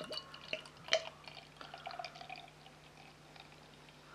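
Beer pouring from a glass bottle into a glass: a few short glugs and splashes, the loudest about a second in, then a quieter pour that fades away.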